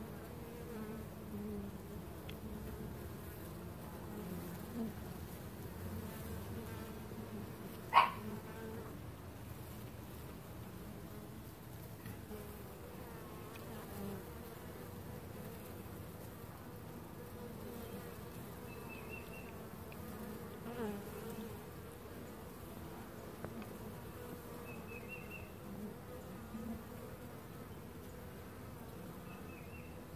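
A honeybee swarm clustered on a comb frame, buzzing with a steady low hum. A single sharp click about eight seconds in.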